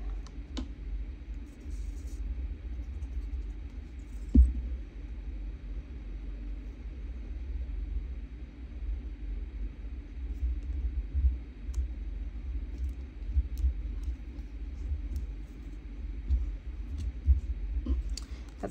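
Paper handling on a cutting mat: hands pressing a small number piece onto a paper tag and shifting paper pieces, with faint scattered taps over a steady low rumble. One sharper knock about four seconds in.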